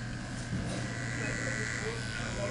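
Electric hair clippers running with a steady buzz, held against the back of the head to shave an undercut; the buzz grows stronger about half a second in.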